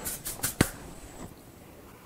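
A few short, sharp taps within the first second, then quiet room tone: light handling of things on a kitchen counter.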